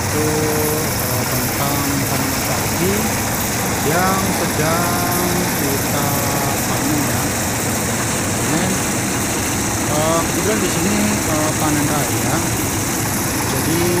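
Small petrol engine running steadily and driving a power rice thresher, whose drum is stripping grain from rice bundles held against it. People's voices are heard over the machine.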